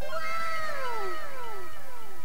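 An edited-in comic sound effect of falling pitched tones: about four overlapping downward glides, each dropping over about a second and starting roughly half a second after the last.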